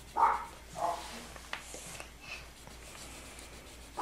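A 3M LeadCheck swab tip rubbed back and forth on painted wood, a faint scrubbing. A dog whines twice briefly in the first second.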